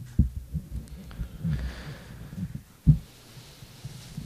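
Irregular dull low thumps picked up by a desk microphone, with one sharper knock about three seconds in.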